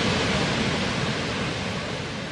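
Steady rushing of a large waterfall, gradually fading in level.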